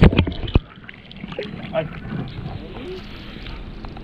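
A camera plunging into seawater: a few sharp knocks and a splash right at the start, then muffled, dull underwater sound with faint voices heard from above the surface.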